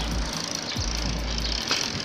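Wind rushing over a phone microphone on a moving bicycle, with low rumbling gusts, and tyres rolling on asphalt.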